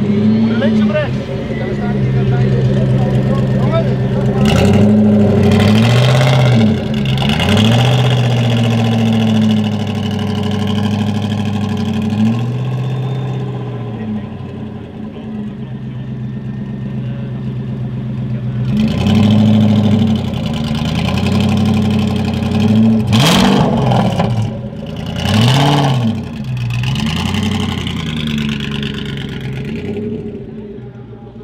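A first-generation Ford GT's V8 idling with a deep, even beat and blipped up in two spells of revs: several sharp rises and falls about five seconds in, then more from about twenty seconds, with quick blips near the end.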